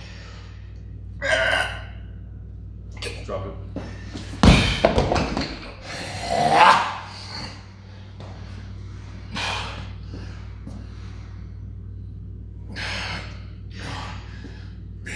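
Hard, gasping breaths from a lifter straining through a heavy incline dumbbell press. About four and a half seconds in, a loud thud with a short metallic ring as the heavy dumbbells are dropped, followed by a voiced grunt.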